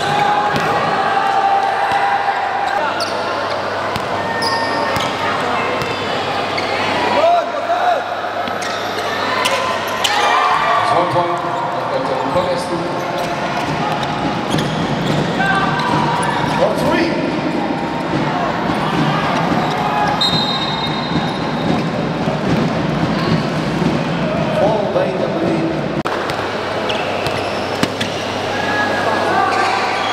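Basketball game sound: a ball bouncing on the hardwood court, with repeated short impacts over indistinct voices from players and spectators in the hall.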